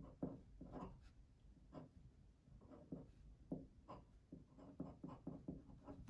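Glass dip pen writing on paper: faint, short, irregular scratches and taps of the nib as lines and letters are drawn.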